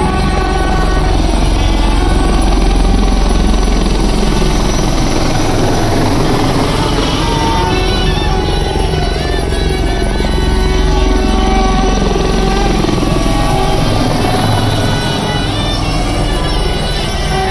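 Helicopter flying low overhead, its rotor beat strong in the first five seconds and then fading, mixed with music.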